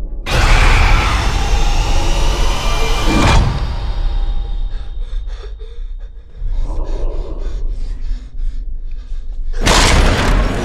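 Horror-trailer sound design. A loud hit about a quarter second in opens a swell of noisy, dissonant score with sustained high tones, and it cuts off at about three and a half seconds. A quieter stretch of sharp ticks or knocks, about three a second, follows, and a second loud hit comes just before the end.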